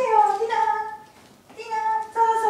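A woman's high-pitched, drawn-out sing-song voice calling to a dog: two long calls, each falling in pitch.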